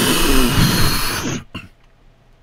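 A hard breath blown at a birthday candle held right up to the microphone, the air hitting the mic as a loud rush that lasts about a second and a half and then cuts off.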